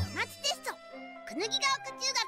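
Anime soundtrack: a cartoon mascot's high, childlike voice speaking Japanese over light, jingly music with short tinkling notes.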